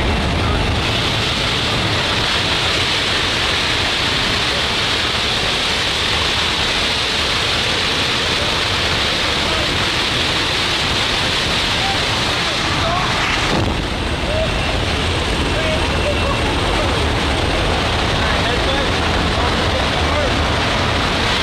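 Steady loud roar of wind and propeller engine at the open door of a jump plane in flight, dipping briefly a little past the middle.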